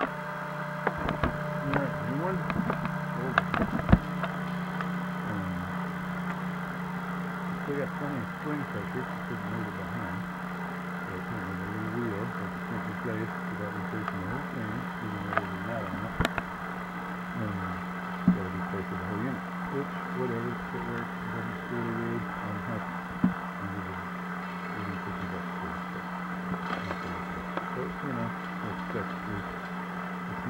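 A steady low hum with faint, indistinct talk underneath and a few sharp clicks scattered through it.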